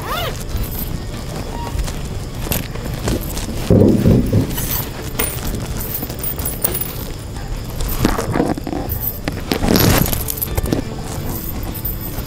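Fabric rustling and gold bangles clinking as bedspreads are folded and pressed into a cloth luggage cube, with brief louder rustles about four, eight and ten seconds in, over background music.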